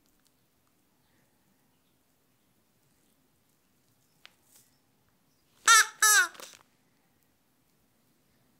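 Two short, high-pitched vocal calls about six seconds in: a puppeteer voicing a crow hand puppet in crow-like gibberish rather than words. A faint single click comes shortly before them.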